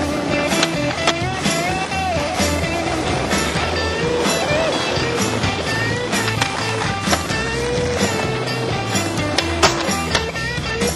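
Skateboard wheels rolling on asphalt, with sharp clacks of the board popping and landing, under a music soundtrack with a wavering melody and a steady low beat.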